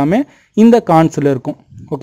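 Only speech: a man narrating in Tamil, with a brief pause about half a second in.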